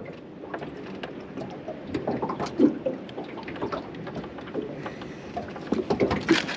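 Scattered light clicks and taps of fishing tackle and line being handled in a small aluminium boat, over a low, even background.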